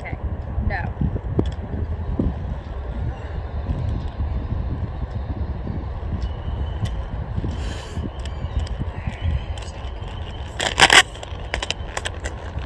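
Quad roller skate wheels rolling on a hard outdoor tennis court: a steady low rumble with scattered clicks and wind on the microphone, and a loud clatter near the end as the skates come up close.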